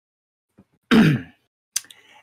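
A person clearing their throat once, about a second in, the sound falling in pitch, followed by a short sharp click just before the end.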